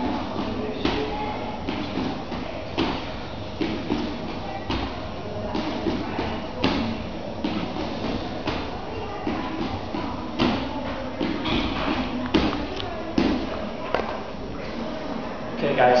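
Repeated thuds of hands and feet landing on a gym floor mat during burpees, about one a second, over background music.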